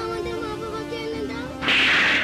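Background music with a wavering melody. About one and a half seconds in, a loud, sudden hiss breaks in and holds: a cobra-hiss sound effect.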